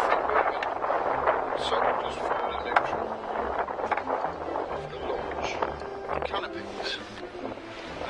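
Gusty wind rushing over the microphone, rising and falling, with scattered clicks and knocks. A sharp knock about three seconds in is the loudest moment.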